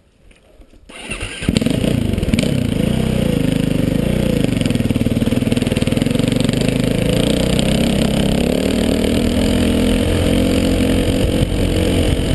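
KTM 450 XC-W dirt bike's single-cylinder four-stroke engine starting about a second and a half in, then running steadily as the bike rides off.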